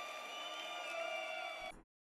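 Faint live-concert audio at the end of a song: crowd noise with a few steady ringing tones over it, cut off suddenly near the end.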